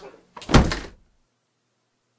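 A person falling and hitting the floor after a jump: one heavy thud about half a second in.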